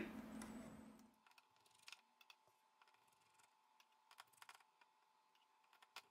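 Near silence, with a few faint scattered clicks from small tools and fingers handling the parts of an opened smartphone.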